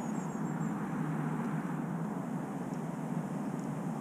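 Steady low background rumble, with no distinct sound events and only a faint high chirp just after the start.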